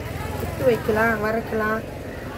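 A person speaking over a low, steady background rumble.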